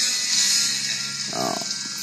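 Music playing from a car CD/USB head unit, with a steady hiss over it.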